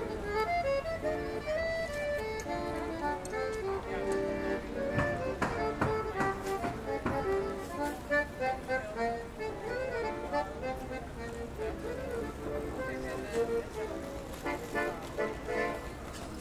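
Street accordion playing a melody of held notes, with street traffic beneath. A few sharp knocks come through about five to seven seconds in.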